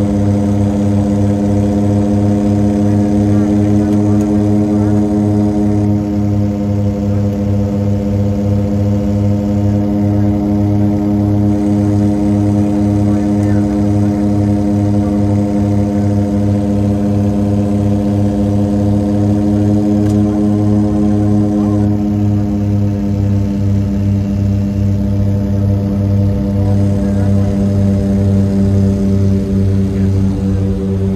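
Cabin drone of a DHC-6 Twin Otter's twin Pratt & Whitney PT6A turboprops in flight: a steady, loud hum of propeller tones with a pulsing beat in the lowest note, wavering slightly in pitch twice as the power is adjusted.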